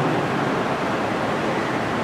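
Steady rushing hiss, an even noise that stays at one level throughout, with no distinct strokes or clicks in it.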